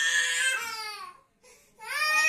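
Baby crying: one long wail that dies away a little over a second in, then after a short breath a fresh wail begins just before the end.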